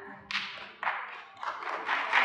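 A few scattered handclaps from the congregation, about four sharp single claps roughly half a second apart.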